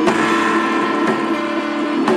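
Live folk-rock band with accordion, guitars and a hand drum playing a song. A chord is held steady through most of it, with a sharp hit at the start.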